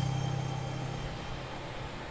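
The last held low note of a song's backing music fading away over about a second, leaving faint hiss.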